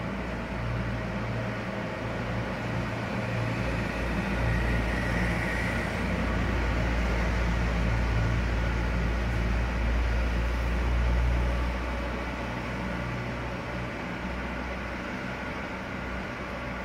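Industrial bubble washing machine running: a steady low motor hum under a rushing hiss. It grows louder from about four seconds in and eases off again after about twelve.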